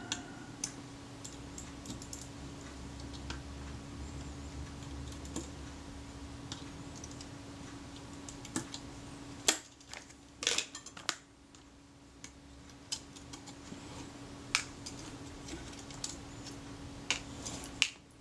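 Light scattered metallic clicks and taps of a small screwdriver backing screws out of a Rolleiflex Automat TLR's metal front plate, with the tiny screws and tool being set down. There is a quick cluster of clicks a little past halfway, all over a faint steady hum.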